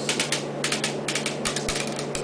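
An irregular quick run of light clicks and rattles, densest around the middle, from small plastic airsoft gear being handled.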